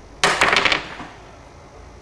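A short, loud clatter of hard laptop parts being handled on a bench: a quick run of clicks and knocks lasting about half a second, starting a moment in.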